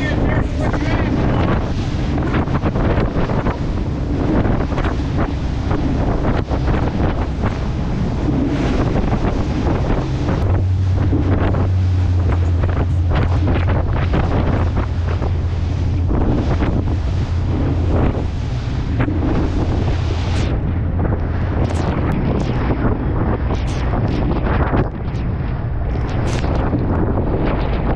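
Wind buffeting the microphone over the rush of spray and waves breaking along the hull of a 2021 Blue Wave 2800 Makaira running fast through choppy open sea, with frequent splashes. A steady low drone comes in about ten seconds in and eases off a few seconds before the end.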